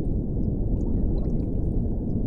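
Bubbling, gurgling liquid sound effect: a steady, dense low churn with faint scattered tiny pops.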